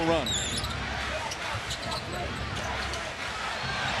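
Basketball game sound in an arena: a steady crowd murmur under the ball being dribbled on the hardwood, with a short high sneaker squeak about half a second in and scattered light clicks.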